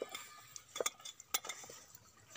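A few sharp clinks and light scrapes of metal plates knocking against stones and each other as they are handled and cloth is tied over them.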